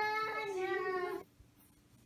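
A child's voice singing one long held note that stops about a second in, then near quiet.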